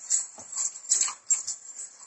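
A toddler making a few brief, soft vocal sounds, short squeaks and breaths between pauses.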